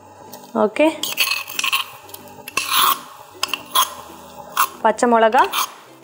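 A metal spoon scraping and knocking against a stone mortar as crushed ginger and green chilli are tipped out into a saucepan of hot water: a string of short scrapes and clicks.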